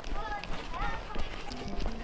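Footsteps of a person running on paving stones, with faint voices and music in the background.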